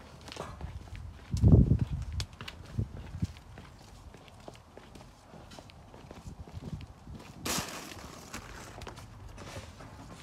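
Footsteps of a person in sneakers walking on a concrete patio, with a loud low thump about a second and a half in and a short rustling burst near the end.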